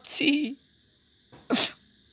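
A man's voice trails off, followed by a pause. About a second and a half in comes one short, sharp burst of breath from the same speaker.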